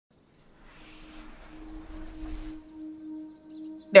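A soft, steady low music note fading in over faint outdoor background noise, with a few brief high chirps; fainter higher notes join about halfway through.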